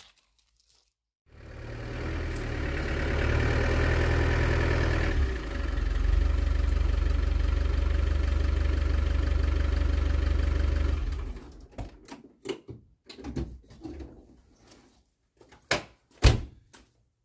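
An engine starts about a second in, runs steadily with a deep low hum for about ten seconds, then stops; a few separate knocks follow near the end.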